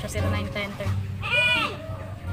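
Speech over background music, with one short high-pitched wavering sound about one and a half seconds in.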